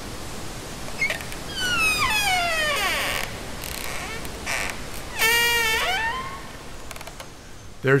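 Old wooden door's hinges creaking as it is opened. There is a long creak falling in pitch about two seconds in, then a shorter, steadier creak about five seconds in that rises at its end.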